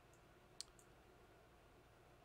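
Near silence: faint room tone, with one short click a little over half a second in and two fainter ticks around it.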